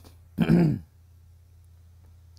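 A man clearing his throat once, a short burst about half a second long, near the start.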